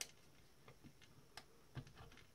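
Faint, scattered clicks and light taps of a thin plywood baseboard being pressed into the plastic dome base of an iMac G4: a sharp click at the start, a few small ticks, and a duller knock near the end.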